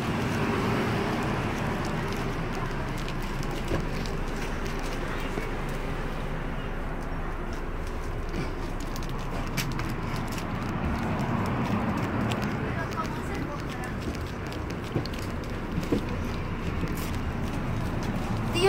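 Steady cabin noise inside a parked coach bus, an even running hum, with faint voices and a few small clicks.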